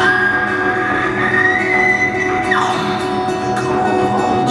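Live solo blues on a resonator guitar with a man singing; a long high note slides up, holds, then falls away about two and a half seconds in.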